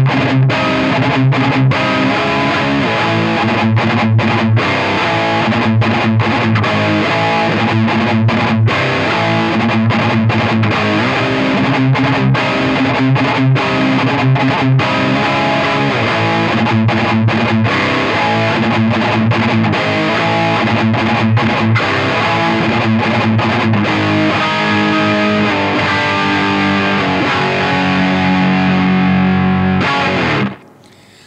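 Distorted electric guitar riff played through a Peavey 6505+ combo amp, with many short stops between the chords. It is recorded with an Akai ADM 40 dynamic microphone aimed at the centre of the speaker cone, 45 degrees off axis.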